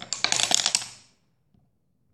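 Two pencils joined by a wound rubber band clattering against each other in a rapid run of clicks for about a second as the toy unwinds, then stopping.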